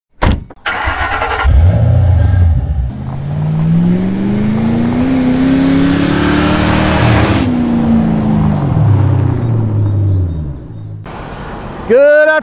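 Engine sound effect for an animated intro: a click, a short start-up, then the engine revs up slowly over about four seconds and winds back down, fading out about a second before the end. A rising hiss builds under the rev and cuts off sharply about seven and a half seconds in.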